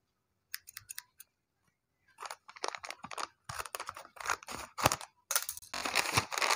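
Metal scissors cutting through a paper bag: a few sharp snips about half a second in, then a quick run of crisp cuts. Near the end, paper crinkling as the bag is pulled open.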